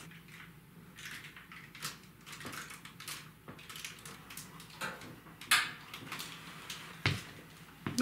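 Light clicks and rustles of hands working a paper globe lampshade onto a ceiling light fixture, with a sharper click about five and a half seconds in and a low thump about seven seconds in.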